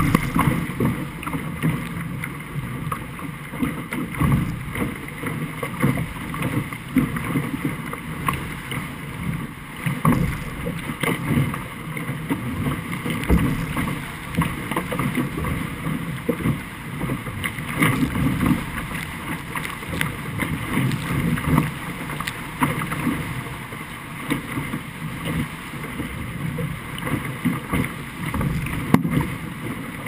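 Musto Skiff hull planing through choppy water in gusty wind: water rushing and slapping against the bow with frequent uneven surges, mixed with wind buffeting the microphone.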